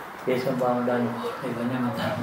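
A man's voice speaking, with short pauses between phrases.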